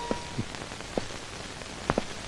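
Steady hiss of an old film soundtrack with a few faint, scattered clicks, and a thin held tone that stops just under a second in.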